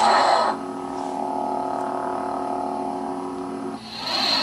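Hasbro Ultimate FX lightsaber sound board playing through the saber's speaker: a clash sound at the start that lasts about half a second, then the steady idle hum for about three seconds. Another burst of clash sound starts just before the end.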